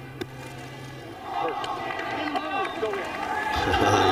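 Large golf gallery cheering and shouting, swelling from about a second in and growing louder as a chip shot runs up the green toward the pin.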